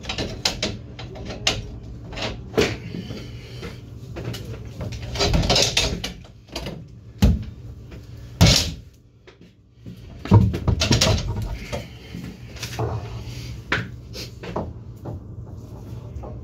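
Butcher's knife cutting and pulling apart a hanging leg of veal: irregular clicks, knocks and short rustling, tearing bursts of handling, over a steady low hum.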